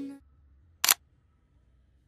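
Background music fades out, leaving near silence. About a second in comes a single sharp camera-shutter click, a transition sound effect.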